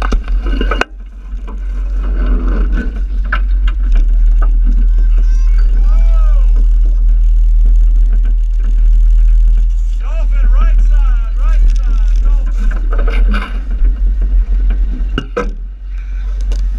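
Steady low rumble of a boat under way, heaviest through the middle. Voices shout and yell about six seconds in and again from about ten to twelve seconds.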